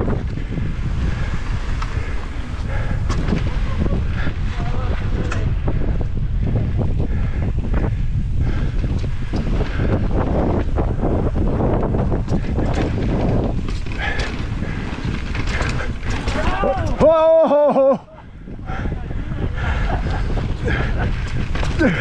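Mountain bike descending a rocky dirt singletrack at speed: steady wind noise on the microphone, with constant rattling and knocks from tyres and frame over rocks and roots. About seventeen seconds in, a short wavering pitched sound rises above it, and the noise then dips briefly.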